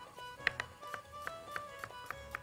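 A chef's knife chopping carrot on a wooden cutting board: several sharp taps, the loudest about half a second in, over soft instrumental background music.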